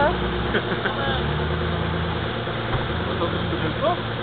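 Off-road SUV's engine running low and steady while stuck nose-down in a mud hole, its note rising a little about a second in and easing back near the end.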